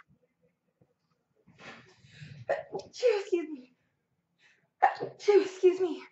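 A person sneezing twice: a breathy build-up leading into a sneeze about two and a half seconds in, then a second sneeze near the end.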